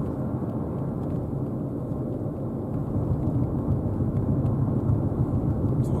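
Steady road and engine noise inside the cabin of a Mazda Biante (2.0-litre SkyActiv petrol engine with a 6-speed automatic) cruising on a city road. It grows slightly louder in the second half.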